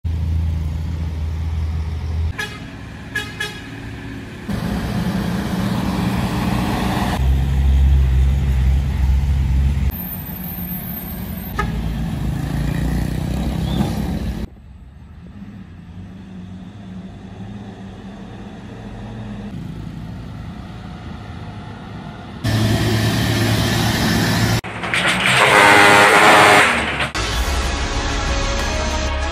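Heavy diesel trucks, some loaded with sugarcane, running under load, with several short horn toots. The sound changes abruptly several times as one truck clip cuts to the next.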